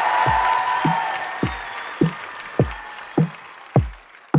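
Opening of a hip-hop beat: a deep electronic kick drum that drops in pitch, struck about every 0.6 s, under a loud, bright wash of noise that starts suddenly and fades away over the first three seconds.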